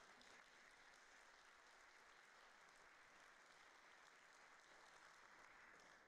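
Faint, steady applause from a large audience.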